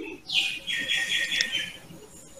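A bird's short high chirping call: a quick falling note about a third of a second in, then a pulsing trill lasting about a second.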